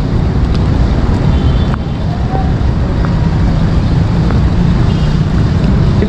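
Steady low rumble of traffic and wind noise picked up while riding a bicycle slowly, with a few faint light clicks.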